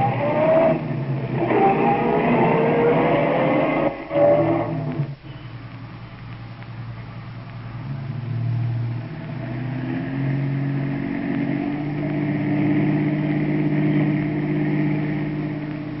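Radio-drama sound effect of a taxi's engine driving in traffic: the engine revs up with a rising pitch for about the first five seconds, drops away, then runs steadily and grows gradually louder.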